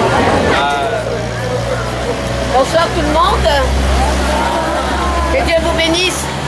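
Scattered voices of people talking over the steady low rumble of a motor vehicle's engine in street traffic; the rumble swells in the middle and eases near the end.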